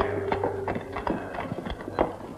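Horse hooves clip-clopping in irregular knocks on hard ground, as a film sound effect, while a held note of background music fades out about a second in.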